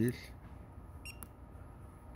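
A single short electronic beep from the Juki DDL-9000C sewing machine's operation panel as one of its buttons is pressed, about a second in.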